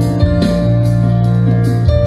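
Live band playing an instrumental passage over a stadium sound system: held keyboard and guitar notes over a strong bass line, with a few drum hits.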